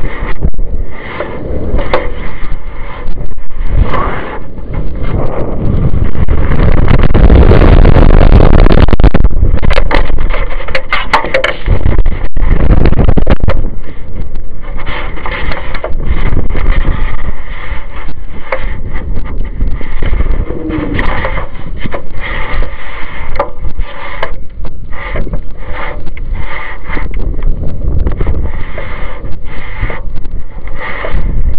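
Loud wind rushing over the descending high-power rocket's airframe and buffeting its onboard camera microphone, peppered with frequent knocks and rattles. It is heaviest as a continuous roar from about six to thirteen seconds in, then goes on in gusts.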